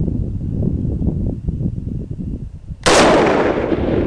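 A rifle shot about three seconds in: sudden and loud, its report dying away slowly over the following seconds. Before it there is a low rumbling noise.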